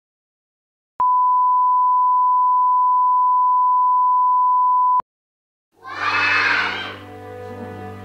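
A steady 1 kHz test tone over colour bars starts about a second in, holds for four seconds and cuts off abruptly. Near the end, after a brief silence, music starts with a low steady drone and voices.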